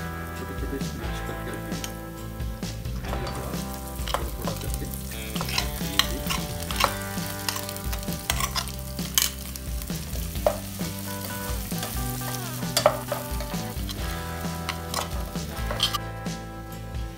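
Wooden spatula stirring and pressing mashed boiled potatoes into hot oil in a saucepan, with a light sizzle of frying and sharp clicks and knocks of the spatula against the pan.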